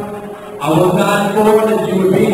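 A man's voice through a microphone and PA, calling out in long drawn-out syllables held on a steady pitch, after a brief pause at the start.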